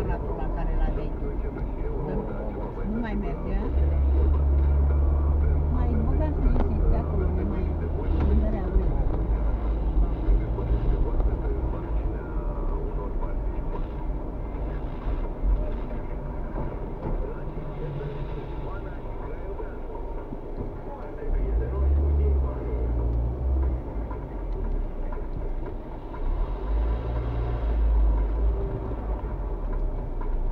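Car engine and tyre rumble heard from inside the cabin while driving slowly. It is low and steady, swelling for a few seconds about four seconds in and twice more near the end.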